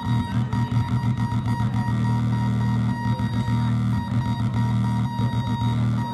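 Electronic noise-drone music from DIY synth circuits played through a mixer: a steady low droning hum with a thin high tone held above it and a fast crackling, stuttering texture running through it.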